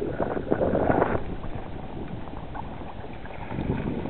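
Wind buffeting the microphone on open, choppy water, loudest in about the first second, then steadier.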